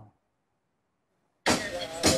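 Near silence for about a second and a half, then a sudden burst of street traffic noise over a video-call line, picked up by an outdoor participant's microphone.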